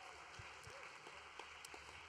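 Faint audience applause, an even spread of clapping.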